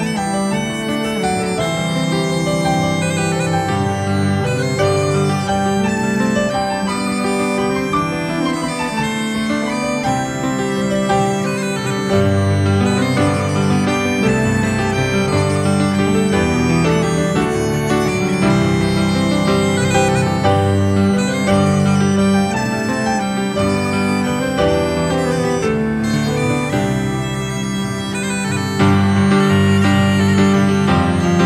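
Instrumental folk waltz played by an acoustic folk band, with a moving melody over a steady low drone. It gets a little louder about twelve seconds in and again near the end.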